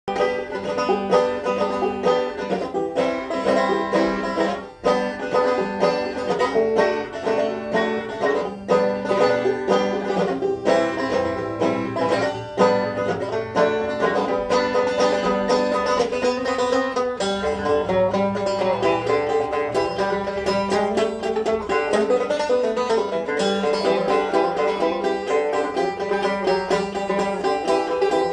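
Resonator banjo fingerpicked in a fast, continuous stream of plucked notes, with one brief break about five seconds in.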